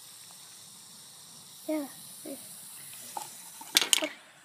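Baking soda and vinegar fizzing with a steady hiss in a toy toilet experiment, then a quick cluster of sharp knocks near the end from plastic cups being handled.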